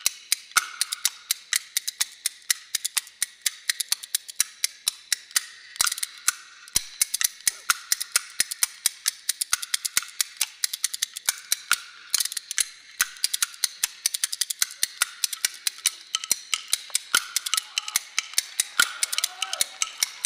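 Kuaiban bamboo clappers, a large two-slab clapper and a small multi-piece clapper played together in rapid, rhythmic clacking, several strokes a second. This is the instrumental clapper prelude of a kuaibanshu piece, before the verse is sung.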